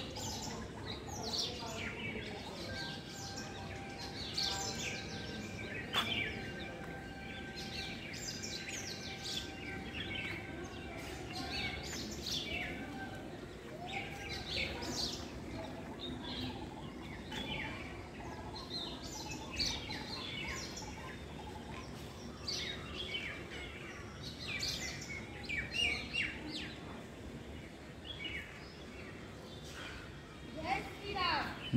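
Small birds chirping, many short high calls overlapping one another without a break.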